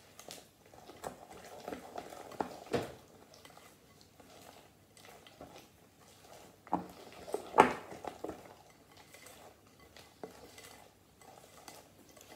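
Spoon stirring thick brownie batter in a glass mixing bowl, with irregular scrapes and clinks of the spoon against the glass. The loudest knocks come about three seconds in and again past halfway.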